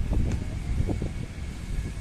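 Wind buffeting the microphone outdoors, a steady low rumble with a few light knocks in it.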